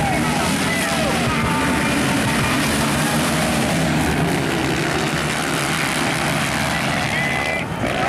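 A pack of motocross bikes' engines running together at a race start, as one dense, steady engine noise.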